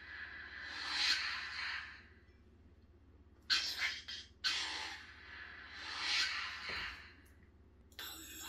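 Lightsaber sound board with the Ancient Prophecies sound font, played through the hilt speaker: a blade retraction swell near the start, then about 3.5 s in a short crackling, clicking preon that runs into the ignition, followed by another swell that fades as the blade goes off.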